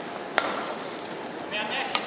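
Badminton racket striking the shuttlecock twice, about a second and a half apart: a sharp crack a little after the start and a second one near the end on a jump smash. Steady crowd murmur in a large hall underneath.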